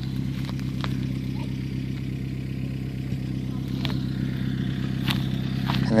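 A vehicle engine idling steadily, with a few faint ticks over it.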